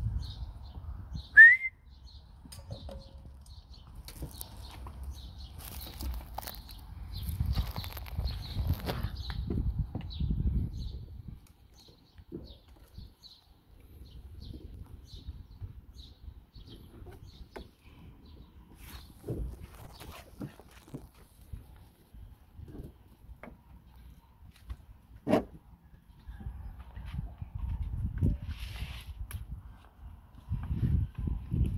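A puppy gives one short, high, rising squeal about a second and a half in and a brief yelp later on, among soft scuffling and low rumbling on the microphone.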